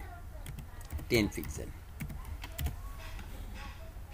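Typing on a computer keyboard: a handful of scattered keystrokes, over a low steady hum.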